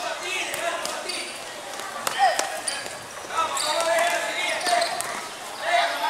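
A basketball bouncing several times on a hard court during a youth game, with children's voices shouting over it.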